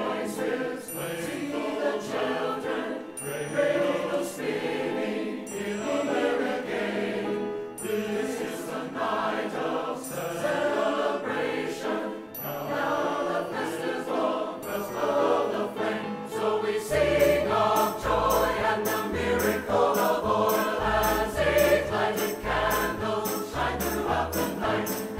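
A choir singing with instrumental accompaniment. About two-thirds of the way through, a strong rhythmic bass line and percussion come in and the music drives harder.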